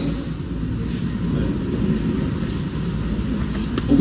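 Steady low rumbling background noise with no speech, the room tone of a large hall.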